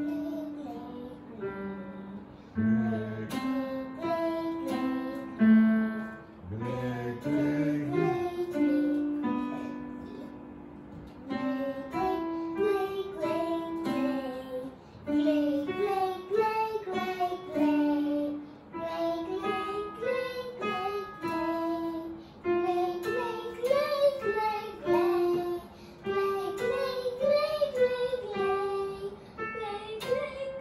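A young girl singing a vocal warm-up exercise, with an electronic keyboard sounding the notes alongside. Short phrases step up and down in pitch and repeat every few seconds with brief breaks between them.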